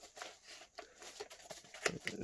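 Faint rustling of old paper packaging as a glass lamp bulb is slid out of it, with a few light clicks and a sharper tick near the end.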